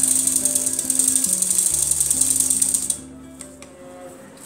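Old black sewing machine stitching rapidly, a fast even ticking that stops suddenly about three seconds in, over background music with sustained notes.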